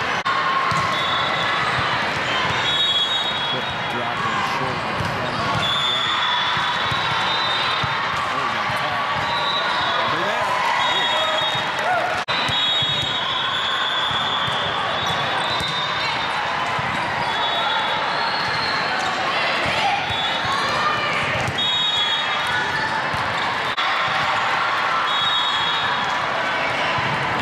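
Sound of a busy volleyball hall: volleyballs bouncing and being struck, athletic shoes squeaking in short chirps on the court floor, over a steady hubbub of players' and spectators' voices in a large echoing sports hall.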